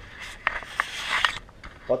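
Handling noise from a camera on a selfie stick being turned: about a second of scraping with a few sharp clicks.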